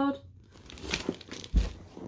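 Crumpled paper stuffing inside a mini backpack crinkling and rustling as the bag is handled and turned around, with a dull thump about a second and a half in.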